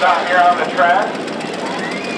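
A voice talks for about the first second over the steady, rough rumble of demolition derby cars' engines running at idle.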